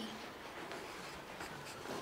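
Faint scratching of a pencil writing on paper in an exercise book.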